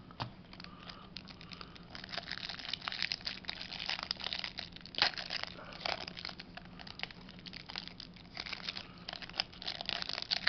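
Clear plastic wrapping around a small stack of trading cards crinkling and tearing as it is picked open by hand, a dense crackle of small clicks that gets busier about two seconds in, with a sharper snap near the middle.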